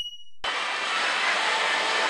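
A brief high electronic tone at the very start, then, about half a second in, the steady dense din of a pachislot parlor cuts in: many slot machines running at once.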